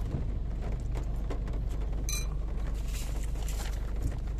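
Steady low hum of a car cabin, with small clicks of a metal spoon in a soup bowl. About two seconds in there is a brief sharper clink, followed by a short hissy stretch of eating noise.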